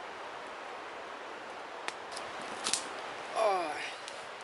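Steady rush of a river flowing in the background, with a few faint clicks about halfway through and a short falling vocal sound near the end.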